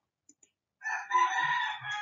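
A single long animal call, starting a little under a second in after near silence and lasting about a second and a half.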